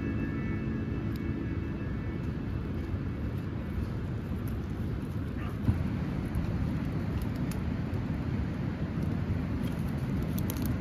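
Steady low outdoor rumble of ambient field noise, with a single brief knock near the middle.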